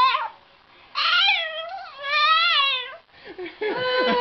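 Boston terrier puppy crying in long, wavering, howl-like whines: one cry ends just after the start, two more follow, and another begins near the end.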